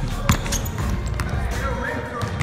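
A basketball dribbled on a gym floor: several sharp bounces, the loudest about a third of a second in. A rap track with vocals plays over it.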